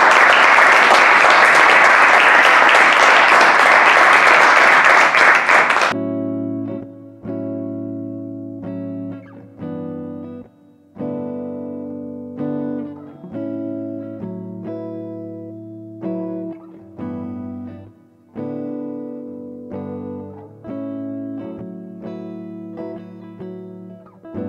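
Audience applause that cuts off abruptly about six seconds in, followed by closing music of plucked guitar notes over a bass line, a new note roughly every second.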